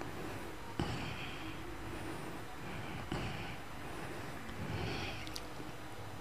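A quiet pause in amplified Quran recitation: a steady low electrical hum from the sound system, with a few soft breath sounds and small clicks picked up by the microphone.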